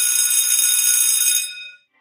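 An electric bell ringing continuously, then stopping about one and a half seconds in with a short fade.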